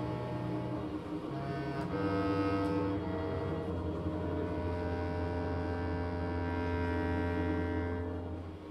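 Live orchestra playing slow, sustained chords over a held low bass note. The harmony shifts a few times in the first three seconds, then holds.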